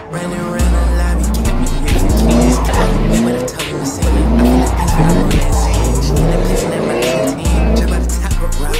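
A car doing donuts in heavy tyre smoke, its engine revving up again and again with tyres squealing, under hip-hop music with a heavy bass beat.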